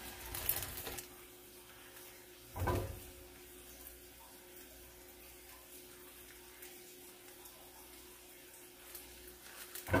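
Plastic wrapping of a roll of ground beef being handled: brief crinkling at the start, then one soft thump about three seconds in. After that only faint handling noise over a steady low hum.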